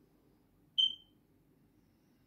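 A single short, high-pitched electronic beep about a second in, fading out quickly, over a faint low room hum.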